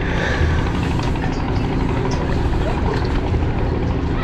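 Steady low rumble with an even noise over it: the boat's engine running.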